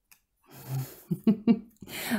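A woman breathing in, then a short hum and a couple of brief voiced sounds, running into speech near the end.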